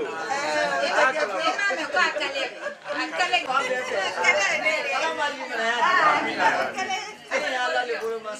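Several voices talking over one another: overlapping chatter, with no break.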